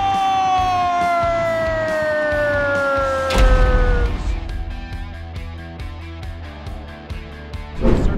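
Arena goal horn sounding after a goal, a loud held tone that slides steadily down in pitch until a deep booming hit cuts it off about three and a half seconds in. After that, background music with a steady beat.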